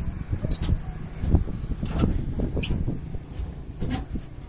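Truck engine idling with a steady low rumble, with a few light knocks and clinks scattered through it.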